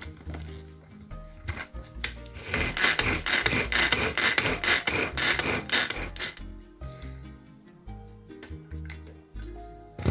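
Manual pull-cord food chopper being worked: a run of quick cord pulls, each giving a rasping whirr as the spinning blades chop roast pumpkin with sugar and spices, loudest from about two and a half to six seconds in. Background music plays throughout.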